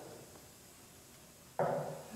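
Quiet room tone, then about one and a half seconds in a single strum on an acoustic guitar sounds suddenly and rings on.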